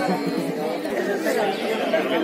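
Indistinct chatter: several people talking at once, no single voice standing out.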